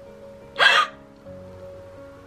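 A young woman's sharp, sudden gasp of surprise, lasting about a third of a second, about half a second in. Soft background music with steady held notes plays underneath.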